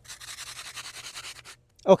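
Gloved hand rubbing dry polymeric sand crack filler back and forth into a crack in concrete: a quick, gritty scrubbing of many short strokes that stops about a second and a half in.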